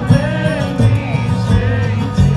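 Bluegrass band playing live: upright bass notes under banjo and acoustic guitars.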